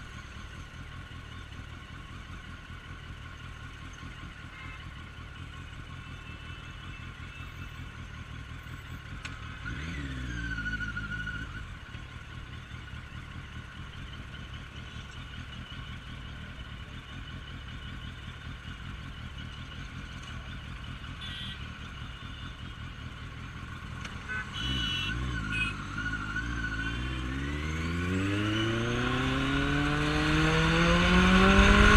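Suzuki Bandit 1250S inline-four engine running at low speed in traffic, with a short rev about ten seconds in that falls away. Near the end it accelerates, its pitch rising steadily as it pulls away.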